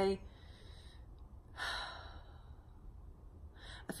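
A woman sighs once, a short breathy exhale about one and a half seconds in. She draws a quick breath near the end, just before speaking again.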